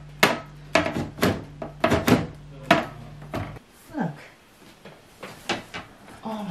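Sharp clacks and knocks of a panel being pushed and knocked against a small PC case while trying to fit it, about a dozen in the first three and a half seconds, then fewer and quieter.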